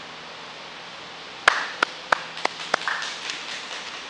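Hands clapping: about five sharp claps roughly three a second, starting about a second and a half in, followed by a few fainter ones.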